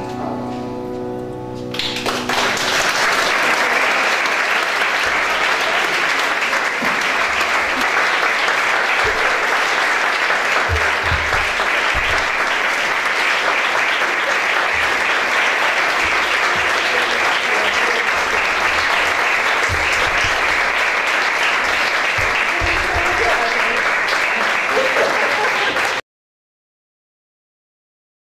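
A grand piano's final chord fades away, then an audience applauds steadily for over twenty seconds until the sound cuts off suddenly.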